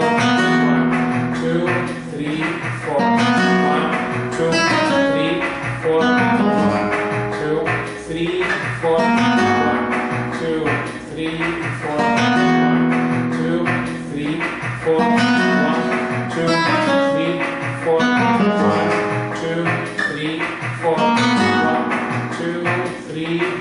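Flamenco guitar playing the theme of a rumba. Strummed chords and picked melody notes follow a steady beat, with phrases swelling about every three seconds.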